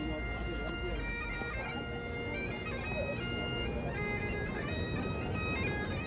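Bagpipes playing a melody over steady drones, with low outdoor rumble underneath.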